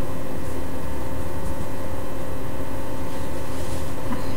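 Steady room noise: an even hiss with a faint constant hum, with no distinct sound event.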